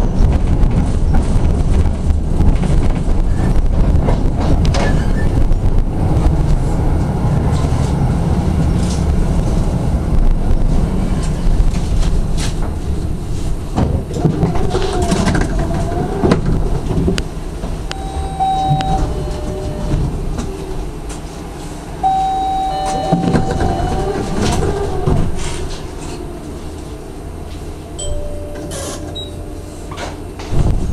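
SGP E1 tram running on the rails with a heavy wheel-and-track rumble, slowing and coming to a standstill past halfway. Once stopped a quieter hum remains, with a few short, steady high tones.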